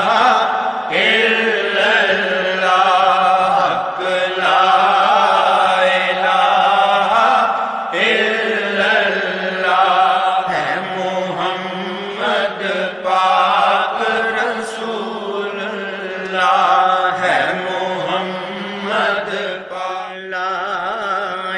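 Voices chanting a Punjabi devotional verse in a continuous, wavering melody over a steady low drone.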